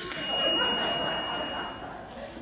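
A small bell struck once, ringing with several clear high tones that fade over nearly two seconds.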